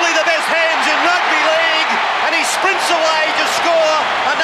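Large stadium crowd cheering in a loud, steady roar, with a man's voice calling out over it.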